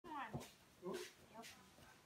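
Kitchen knife chopping on a wooden cutting board, a few sharp knocks, under faint voice-like whining sounds that rise and fall.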